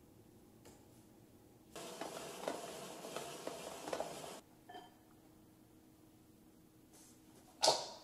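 Countertop crank spiralizer cutting a zucchini into noodles: a rough, crackling grind for about two and a half seconds that stops abruptly. Near the end comes one sharp knock with a short ring.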